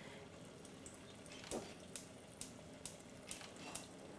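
A pot of bean and vegetable soup simmering faintly under a glass lid, with a dozen or so small scattered pops and clicks in the second half.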